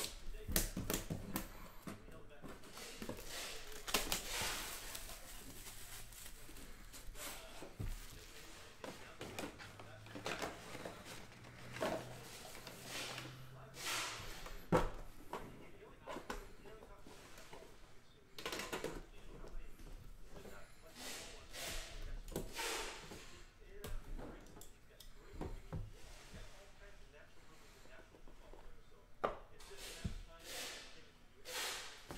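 A Panini Immaculate Baseball box being opened and handled: a scattered run of knocks, taps and scrapes as the lid is lifted and the card pack slid out.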